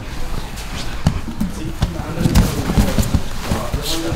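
Grapplers rolling on training mats: irregular thuds, knocks and scuffs of bodies and hands hitting the mat, thickest in the middle, with voices in the background.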